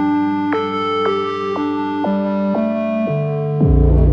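Korg M3 synthesizer playing sustained, organ-like chords that change about every half second in a slow, mostly descending line. Near the end a deep bass note comes in and the sound gets louder.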